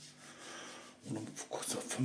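Soft rubbing noise from a hand-held phone being handled, then a man's voice starting about a second in.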